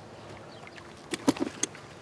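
A few quick scuffs and knocks of shoes on rock as a man steps down and sits, bunched about a second in, over a faint steady outdoor background.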